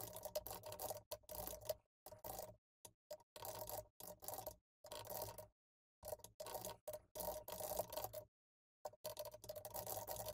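Typing on a computer keyboard: quick runs of keystroke clicks in short, irregular bursts, with complete silence between the bursts and a faint hum heard only while the keys are clicking.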